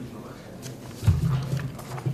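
Footsteps and a few soft knocks as a person walks up to a lectern and sets down papers, with a low hum coming in about halfway through.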